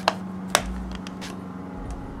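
Handling of a metal steelbook Blu-ray case: two sharp clicks about half a second apart as fingers grip and shift the case, then a few faint ticks, over a steady low hum.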